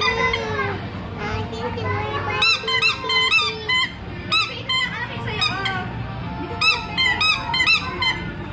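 Chrome bulb horn on a child's tricycle squeezed over and over: short, squeaky honks in quick runs starting about two and a half seconds in, with another run near the end, over background music.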